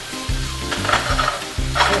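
Smoked chicken pieces and garlic sizzling as they fry in olive oil in a frying pan on a gas burner, with a brief louder burst of sizzle near the end.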